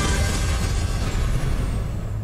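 Game-show title sting: a rumbling whoosh sound effect over music, easing off slightly toward the end.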